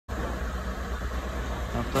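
Fire engines running, a steady low engine rumble under a rushing background noise; a man's voice starts just before the end.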